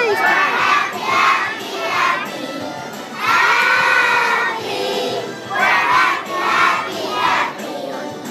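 A large group of young children singing in unison in loud, shouted phrases, each a second or less, with short breaks between them.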